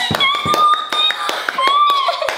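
Children squealing in celebration: one long high-pitched squeal, then a shorter one near the end, over quick hand claps.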